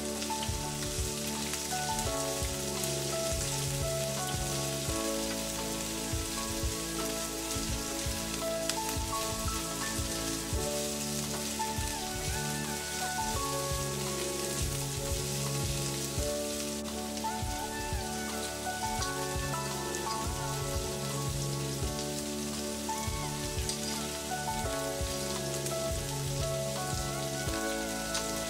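Winged beans and chopped garlic sizzling steadily in hot oil in a frying pan, with short knocks and scrapes from a spatula as they are stirred.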